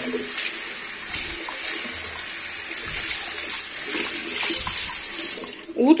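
Water running from a tap onto a ceramic plate as dish detergent is rinsed off it, a steady hiss that cuts off about five and a half seconds in when the tap is shut.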